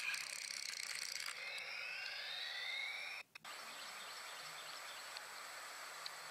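Toy-car sound effects: a falling whine and a rising whine cross in the first half. A brief dropout follows, then a steady hiss.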